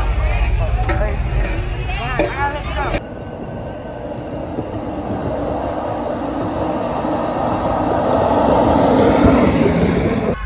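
Voices calling out over a heavy low rumble, then, after a cut, a car coming along the street, its engine and tyre noise growing louder as it nears and passes close.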